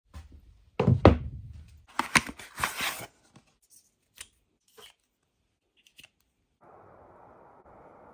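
A box of .45 Colt cartridges being handled and opened, the tray of brass cartridges taken out: loud knocks and scrapes in the first three seconds, then a few light clicks. A steady low hiss starts near the end.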